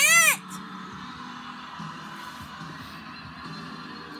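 A short, high-pitched vocal squeal whose pitch rises and falls, right at the start, followed by a quiet, steady background with faint television music.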